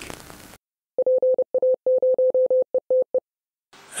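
A single mid-pitched beep tone keyed on and off in a Morse-code rhythm of long and short beeps, lasting about two seconds in the middle.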